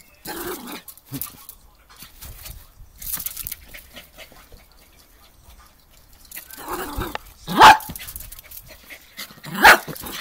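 A small dog barking in short, sharp barks, with two loud barks in the last third.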